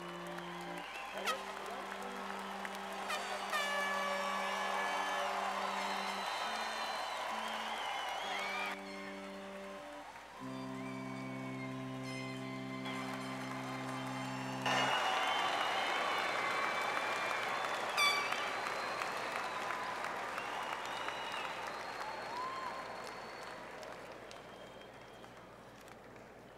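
Audience in a large arena applauding and cheering, with whistles, over music of long held chords that change every few seconds. The music stops about halfway through, and the applause then slowly dies down.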